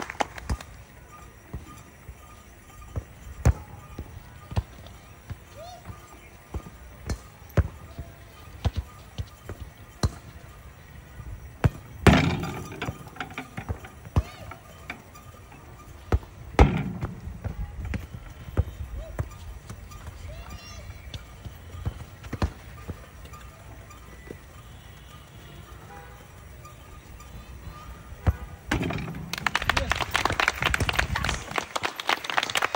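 Footballs being kicked one after another on artificial turf: sharp single thuds every few seconds, with louder, longer impacts about twelve and seventeen seconds in. Voices rise into shouting near the end.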